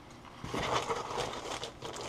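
Plastic mailer bag crinkling and rustling as it is handled, starting about half a second in.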